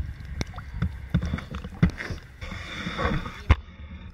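Water sloshing and knocking against the hull of a small boat, with irregular low rumbles and a few sharp knocks, the loudest near the end. A short laugh comes in just before the end.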